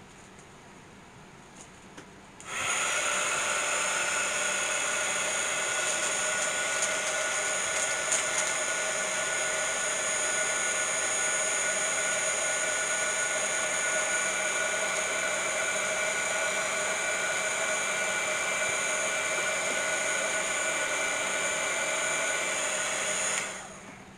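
Handheld embossing heat gun switched on about two and a half seconds in, its fan running with a steady blowing whine for about twenty seconds while it melts white embossing powder, then switched off near the end.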